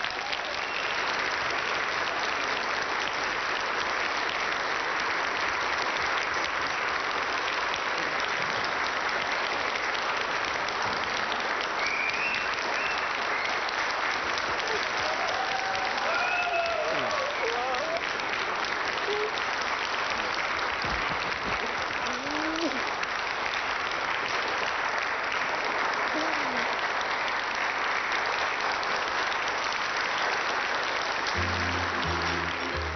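Studio audience applauding steadily and without a break, with a few voices calling out over the clapping in the middle.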